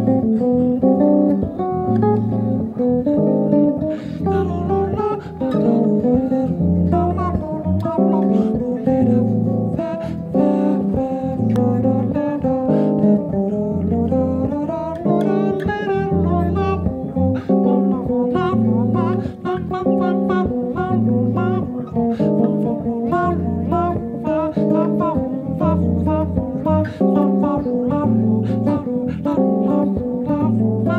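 Solo electric bass: a looped two-chord pattern repeats underneath while an improvised melodic line is played over it, descending through the harmony as the chords change.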